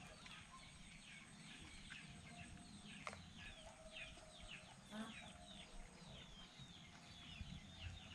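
Faint, rapid high chirping from birds, short calls that drop in pitch, several a second, with two sharp knocks about three and five seconds in.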